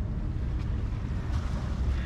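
Wind buffeting the microphone, a steady low rumble, with waves washing against shoreline rocks.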